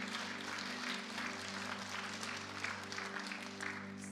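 Congregation applauding steadily, with soft background music of held chords underneath.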